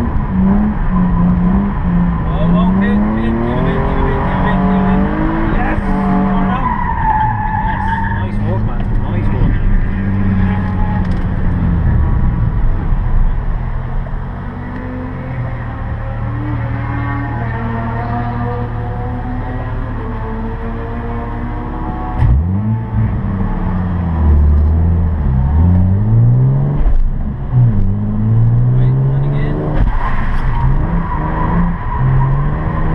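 A Nissan 350Z's 3.5-litre V6 heard from inside the cabin, revving up and down repeatedly as the car is drifted around the course. It is lower and steadier for several seconds about halfway through, then revs hard again.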